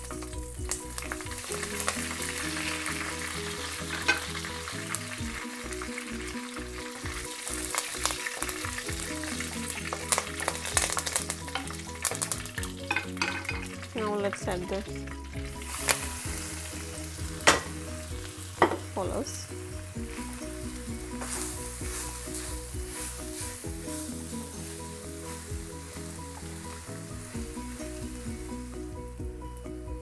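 Spices and curry leaves sizzling in hot oil in a clay pan. Partway through, tender jackfruit is stirred in, and a spoon scrapes and knocks against the pan, with a few sharp knocks near the middle, while the frying goes on.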